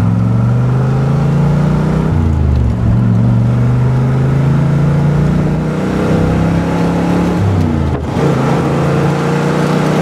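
1966 Corvette's 300 hp 327 small-block V8 heard from the driver's seat while driving, the four-speed manual pulling through the gears. The engine note drops at gear changes about two seconds in and near eight seconds, then climbs steadily as the car accelerates.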